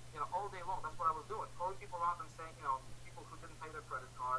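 A man talking over a video-call connection, the voice thin and narrow like a phone line, with a steady low hum underneath.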